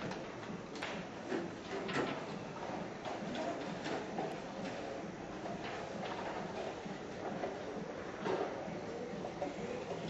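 Street ambience: a run of irregular clicks and knocks over a steady background murmur, loudest about two seconds in and again past eight seconds.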